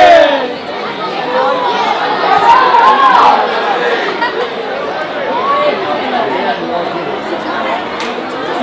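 Many voices talking and calling out over one another: football spectators and players chattering on the touchline, with a louder call about two and a half to three seconds in.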